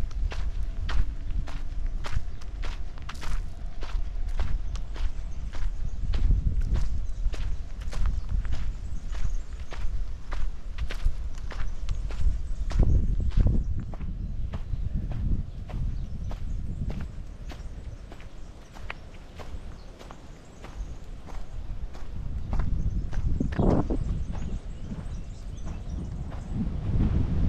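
Footsteps crunching on a dirt path covered with dry leaves and pine needles, about two steps a second, growing quieter past the middle.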